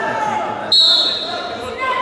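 A sudden high-pitched ringing tone starts a little under a second in and fades away over about a second, over voices talking.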